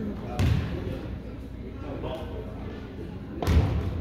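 Two heavy thuds of a basketball in an echoing gym, about three seconds apart, over steady background chatter from spectators and players.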